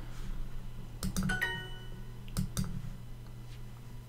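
Mouse clicks, then Duolingo's short ringing 'correct answer' chime sounding as the answer is checked and accepted, then two more mouse clicks.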